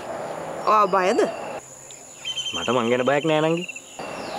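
Insects trilling steadily in the background under two short stretches of talk, one about a second in and a longer one in the second half.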